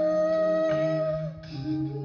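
A cappella vocal group singing live: a lead voice holds one long note that stops about a second and a half in, over a sustained chord of hummed backing voices and bass that carries on.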